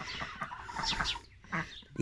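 Poultry in the pen making a few faint, soft calls, with a couple of short high chirps a little under a second in.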